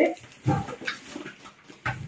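Rustling and handling of a cardboard shipping box and the items inside it, in short irregular bursts, with a brief soft murmur about half a second in.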